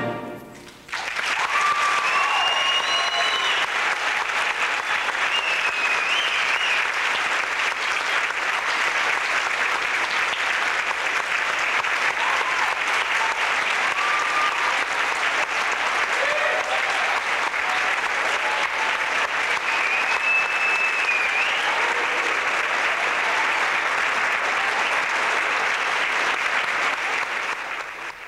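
A symphonic band's final full chord cuts off and rings away in the hall. About a second later the audience breaks into sustained applause, with scattered cheers and whistles over it.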